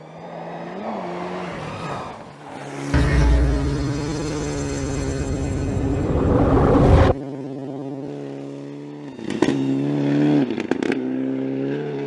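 Classic Toyota Celica rally car's engine revving hard at speed, its pitch rising and falling with the throttle and gear changes. A loud low rumble joins it about three seconds in and cuts off suddenly a few seconds later.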